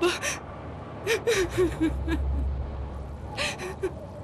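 A woman crying: sharp gasping breaths and short whimpering sobs in three bouts, with a low rumble underneath in the middle.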